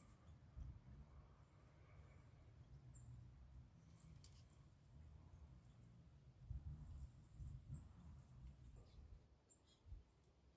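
Near silence: faint outdoor background with a low rumble and a few faint, brief high chirps.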